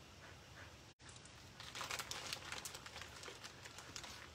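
Crinkling and rustling with small clicks, about two seconds long, as wooden clothespins are handled and clipped onto the edge of a glued paper-and-lace craft board. The sound cuts out for an instant about a second in.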